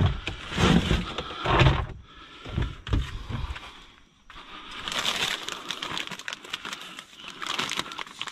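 Thumps of produce and packages being dropped into a plastic storage tub in the first few seconds. This is followed by plastic produce bags and wrappers rustling and crinkling as hands dig through a dumpster.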